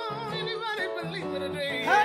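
Gospel singing: long held notes with a wide vibrato over a steady instrumental backing, getting louder near the end.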